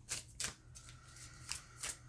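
A tarot deck being shuffled by hand, giving a few short, separate papery flicks of the cards.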